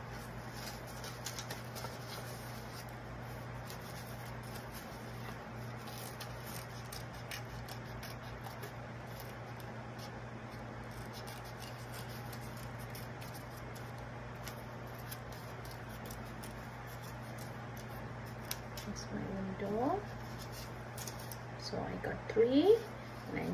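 Small scissors snipping construction paper with many quick, light cuts, and the paper rustling as it is turned, over a steady low hum. A short voice-like sound with a rising pitch comes near the end.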